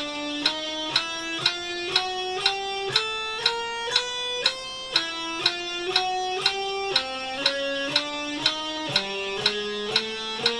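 Electric guitar playing a chromatic one-finger-per-fret speed drill (frets 5-6-7-8 on each string), even picked notes climbing string by string and dropping back several times, with a metronome clicking about twice a second.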